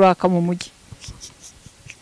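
A voice speaking into a hand microphone, its last word ending about half a second in, then quiet room tone with faint small rustles and ticks.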